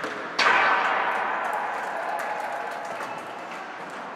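Rink sounds from a youth ice hockey game: a sudden loud bang about half a second in, then a swell of crowd noise that dies away over the next few seconds, with many short clicks of sticks and skates on the ice.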